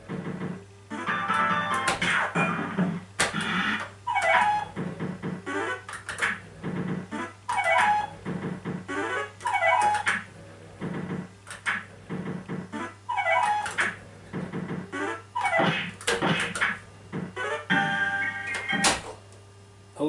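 Golden Dragon fruit machine playing its electronic win jingles while it pays out: short synth tone phrases repeat every second or so, some dropping in pitch, mixed with sharp clicks, over a steady low hum.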